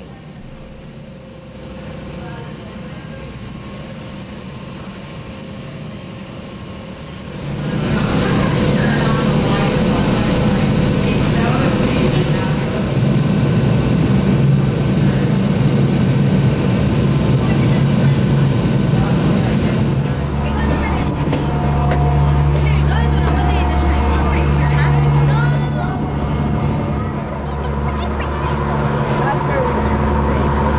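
A passenger ferry's engines droning steadily under way, with a rushing noise. The drone grows louder about eight seconds in and deepens about twenty seconds in.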